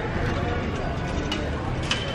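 Steady low rumble of vehicle engines running close by, with a few faint clicks.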